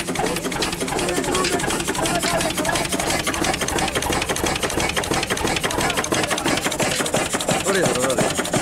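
A 1949 38 hp Blackstone stationary diesel engine running, a steady, fast clatter of evenly spaced mechanical knocks.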